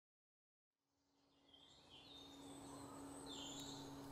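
Silence, then faint outdoor ambience fading in after about a second: a few short bird chirps over a steady low hum.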